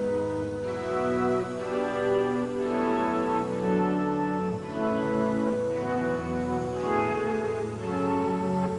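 Electric guitar played live in a slow, sustained instrumental passage: held notes and chords that change about every second, with no drums.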